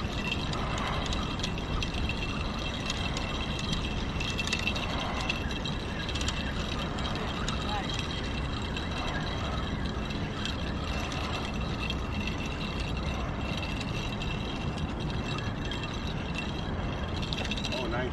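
A spinning reel being cranked under load as a hooked porgy is reeled in, over steady outdoor background noise and faint distant voices.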